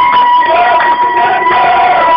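Live tesbiha folk music: a steady, slightly wavering high held tone runs throughout, with voices rising and falling beneath it.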